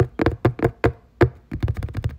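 Sharp mouth-made clicks imitating fast nail tapping: several separate clicks, then a quicker run of clicks about one and a half seconds in.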